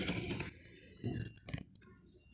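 Handling noise at a sewing machine: a brief rustle of fabric and movement for about half a second, then a few soft clicks and knocks.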